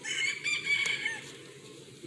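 A rooster crowing once, faintly, the call lasting about a second, over a low steady background hum.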